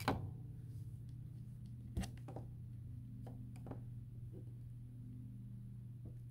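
Clear plastic drafting triangles being turned and set down on paper: a few faint light taps, the clearest about two seconds in, over a steady low hum.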